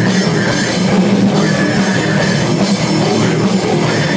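Metal band playing live: electric guitars over a drum kit, loud and continuous.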